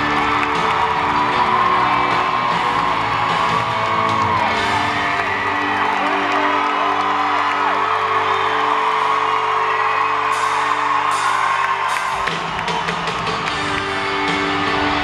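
A live band plays in an arena with the crowd whooping over it. The bass and low end drop out for several seconds in the middle and come back in about two seconds before the end.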